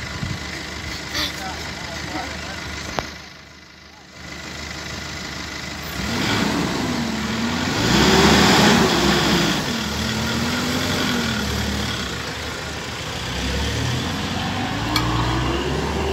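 Minibus engine revving as the bus pulls off, its pitch rising and falling, loudest about eight seconds in and climbing again near the end.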